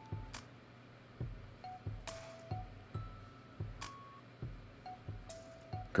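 Faint background music: a few soft, chime-like held notes over a light, steady beat.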